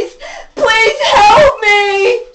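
A woman's high, wailing voice singing without clear words: long held notes, with a rougher, strained cry in the middle.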